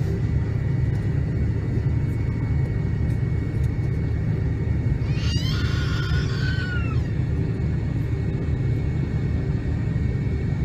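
Steady low rumble inside the cabin of an MD-88 airliner taxiing on its idling Pratt & Whitney JT8D engines, with a faint steady whine above it. About five seconds in, a brief higher warbling sound rises and falls for under two seconds.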